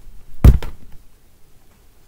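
A single dull thump about half a second in, from a person moving and bumping right against the webcam, followed by faint room noise.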